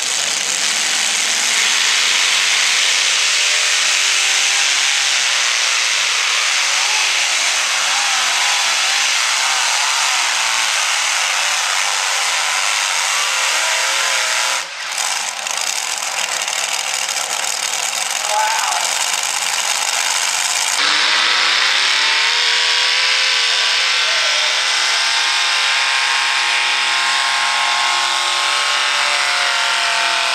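Multi-engine modified pulling tractor under full throttle dragging the weight sled down the track, a loud, steady engine roar. About two-thirds of the way through, a second multi-engine modified tractor revs up, its pitch rising as it launches into its pull, then holding high.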